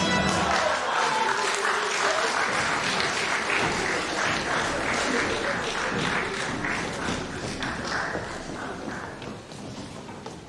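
Theatre audience applauding at the end of an act. It breaks out suddenly as the stage goes dark, holds steady, and dies down near the end.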